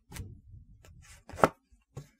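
Oracle cards being handled and laid down on a cloth-covered table: a few short clicks and taps, with the sharpest tap about one and a half seconds in.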